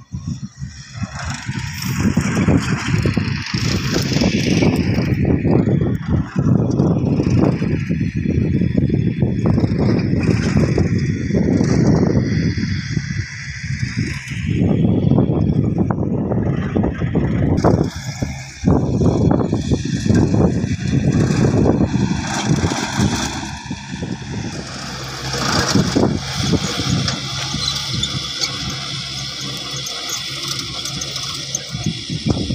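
A farm tractor's engine running as it tills a dry field, with uneven gusts of noise throughout.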